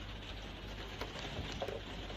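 Light rain falling on a conservatory roof, a steady faint hiss, with a few soft clicks about a second in.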